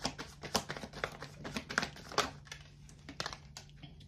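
Tarot cards being handled and shuffled: irregular light snaps and rustles of card stock as the next card is drawn.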